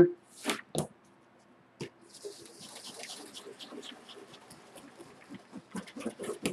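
A hand-held baren rubbed over the back of printing paper laid on an inked linoleum block, a steady dry, scratchy rasp that starts about two seconds in, after a couple of short rustles of the paper.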